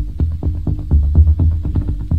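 Club DJ mix of early-1990s techno: a deep, pulsing bass line under fast, evenly spaced percussion hits.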